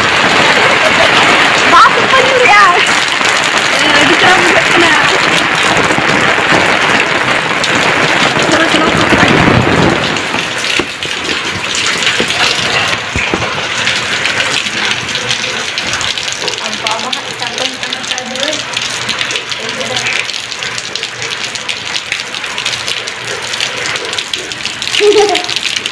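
Rain falling, a steady hiss that is louder for the first ten seconds and eases to a lower, even level about ten seconds in.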